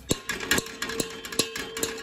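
A metal spoon tapped about five times on the rim of an aluminium cooking pot, roughly two taps a second, to knock food off it. The pot rings with a steady tone between the taps.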